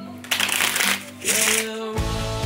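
A deck of playing cards being shuffled by hand, two quick fluttering shuffles of about half a second each, over background music.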